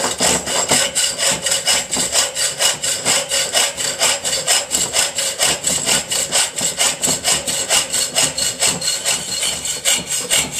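Hacksaw cutting lengthwise down a steel tube held in a vice, in quick, even back-and-forth strokes, a continuous rasping of the blade on the metal.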